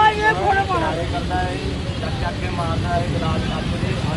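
Talking voices, loudest in the first second and then quieter and broken, over a steady low rumble of road traffic.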